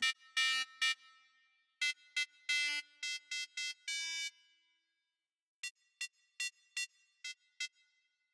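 Short, bright synth notes from the Spitfire LABS Obsolete Machines plugin, shaped to be percussive with the filter fully open and the attack all the way down. A handful of notes of mixed length come first, then six very short blips spaced about 0.4 s apart as the release is turned down.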